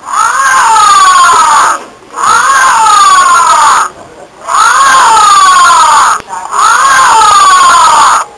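Baby Hulk toy's electronic scream, the same wailing cry played four times in a row. Each cry lasts about a second and a half and rises, then falls in pitch.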